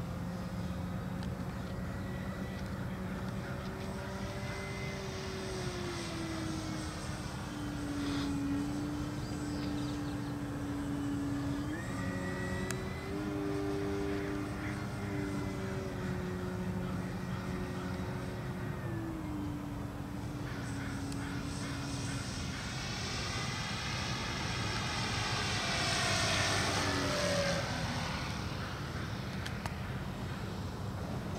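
Radio-controlled Tiger Moth scale biplane droning in flight, its motor and propeller pitch stepping up and down with throttle changes. About 26 s in it passes closer and louder, its pitch falling as it goes by.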